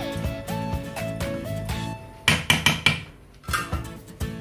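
Background music with a steady beat and melody. A little over two seconds in, a quick run of sharp knocks as a metal ladle is tapped against the rim of the pot after stirring the chicken.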